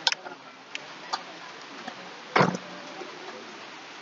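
Scattered sharp clicks and clinks of spoons and tableware at a meal table, with one louder knock about two and a half seconds in.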